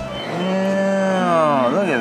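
A woman's long, drawn-out "mmm" of enjoyment while tasting food: one sustained hum that sags slowly in pitch, then wavers up and down near the end.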